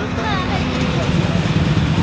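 A car engine idling with a low, steady drone that grows louder from about a second in, under faint crowd voices.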